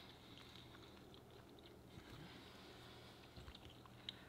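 Near silence with faint chewing: a few soft mouth clicks from people eating baked chicken-and-cheese nuggets.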